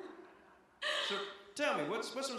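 A sharp, breathy gasp about a second in, then a voice exclaiming with a pitch that swoops down and back up, heard through a stage microphone.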